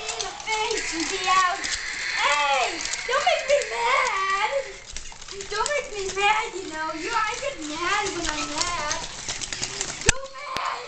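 A child's voice making wordless, wavering monster roars and squeals in play, the pitch sliding up and down almost without a break.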